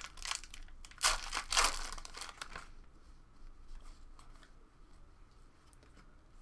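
Foil wrapper of a 2017-18 Panini Chronicles basketball pack being torn open and crinkled by hand. The loudest tearing starts about a second in and lasts about a second and a half, then quieter rustling follows.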